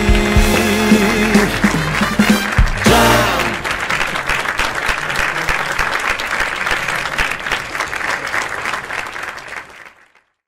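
A live band with trombones plays the closing bars of a song, ending on a final chord about three seconds in. Audience applause follows and fades out near the end.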